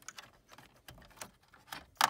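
Scattered light plastic clicks and rattles of a wiring harness connector being unlatched and pulled from the back of a truck's dash control panel, with a sharper click at the end.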